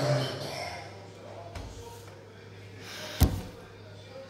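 A single sharp thump about three seconds in, over a steady low hum.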